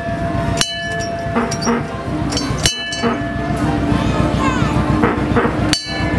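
A vehicle's bell struck three times, each clang ringing on, over the steady rumble of the slow-moving vehicle's engine.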